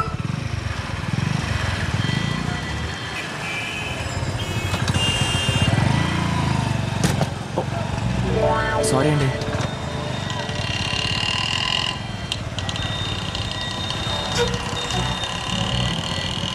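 Busy street traffic at a signal: many motorcycle engines running together in a steady rumble, with horns sounding in several long blasts.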